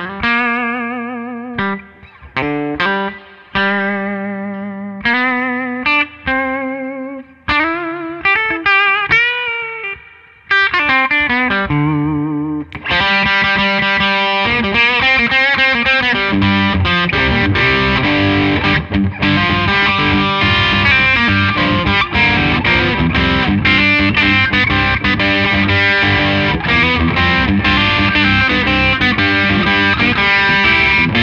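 Gibson Memphis 2015 ES-335 semi-hollow electric guitar with BurstBucker humbuckers, played through an amplifier: single notes and chords with vibrato, each left to ring out and fade. About 13 seconds in it turns to a dense, continuous, distorted passage at a steady, higher level.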